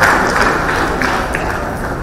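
A loud, even rush of crowd noise in a hall, easing slightly over the two seconds.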